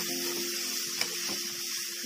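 Diced carrots sizzling in hot oil in a metal kadai as they are stirred with a spatula: a steady hiss, with a light tap about halfway through.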